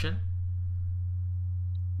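A steady low electrical hum, one unwavering deep tone.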